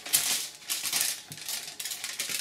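Aluminium foil crinkling as a sheet is lifted and set back down on a table, with a sharp crackle just after the start.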